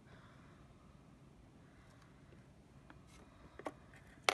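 Near silence: room tone, with a few short clicks near the end.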